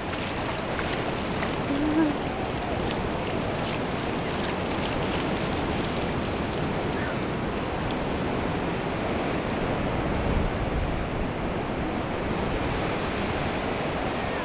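Ocean surf washing steadily on a sandy beach, with small splashes of a child's feet wading in the shallow water during the first few seconds.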